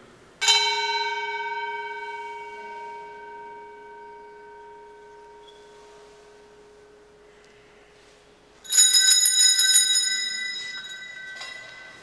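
Altar bells marking the elevation of the chalice at the consecration. One bell is struck about half a second in and rings, fading slowly over several seconds. Near the end, a cluster of small altar bells is shaken and jingles for about three seconds.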